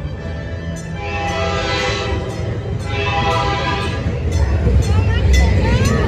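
Dark-ride show soundtrack: two loud pitched calls, each about a second long, with music and gliding tones later. Under it runs the steady low rumble of the moving ride vehicle, which grows louder near the end.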